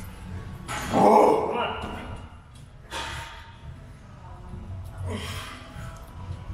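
A man's loud, short grunt about a second in, with quieter vocal sounds later, over a steady low gym rumble.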